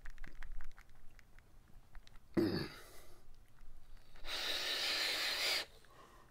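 A person exhaling a cloud of e-cigarette vapour: a long breathy whoosh of about a second and a half near the end. It follows a short sharp breath a little before the middle, and light clicks in the first two seconds.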